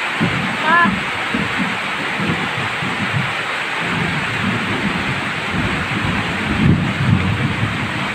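Heavy rain pouring steadily, with an irregular low rumble underneath.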